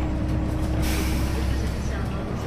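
Hyundai BlueCity low-floor city bus heard from inside the cabin: a steady low hum with a held tone above it, and a short hiss of compressed air from the air brakes about a second in.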